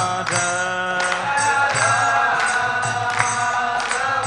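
Devotional chanting: a voice sings a slow melody in long held notes, accompanied by hand cymbal strikes roughly twice a second.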